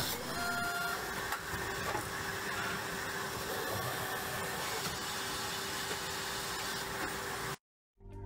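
Form, fill and seal packaging machine running at its die-cut station, which is driven by an electro-hydraulic actuator: a steady mechanical noise with one constant tone running through it. It cuts off suddenly just before the end.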